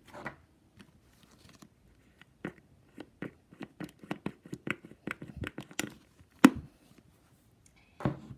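Plastic lotion pump bottle pressed over and over, squirting lotion onto a slime. A run of short clicks and wet squelches comes thick and fast from about two seconds in, the loudest a little after six seconds.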